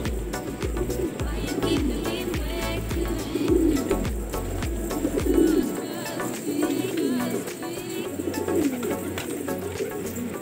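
Flock of domestic pigeons cooing, many low coos overlapping one another.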